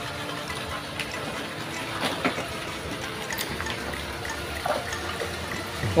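Steady rush of water from a pipe pouring into a fishpond, with a few faint clicks in the middle.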